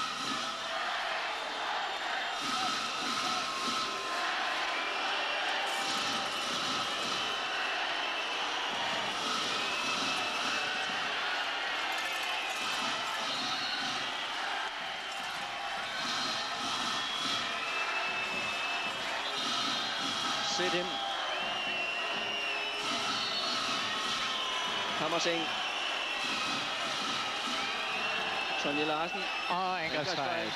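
Handball arena crowd: a steady, dense din of many voices, with drawn-out high calls and whistles rising above it, and a couple of sharp thuds about two-thirds of the way through.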